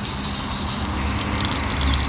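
Hose water leaking and spattering out of the pump housing of a Karcher K2 pressure washer, with the motor off. The leak, which the owner puts down to a loose rubber seal or thread, lets the pump lose pressure.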